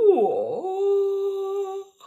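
A woman's voice dips and wavers in pitch, then holds one long, steady open vowel for over a second before breaking off. It is a playful vocalization during laughter practice.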